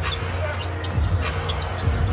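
Basketball being dribbled on a hardwood court, a few bounces heard over steady arena crowd noise.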